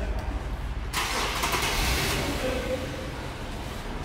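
A car in a parking garage, heard as a sudden rush of noise about a second in that fades away over the next two seconds, over a low steady rumble.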